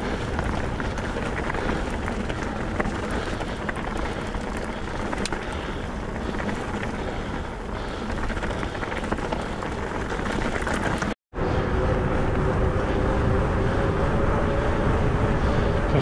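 Mountain bike rolling down a rough stony track: a steady noise of tyres on loose stone and the bike rattling. About eleven seconds in the sound cuts out for a moment, and after it the bike rolls on tarmac with a faint steady hum.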